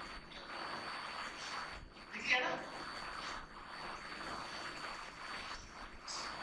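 Whiteboard duster wiping across a whiteboard in a series of rubbing strokes, with a short pitched sound a little over two seconds in.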